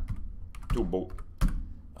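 Typing on a computer keyboard: a few separate keystrokes, the sharpest one about a second and a half in.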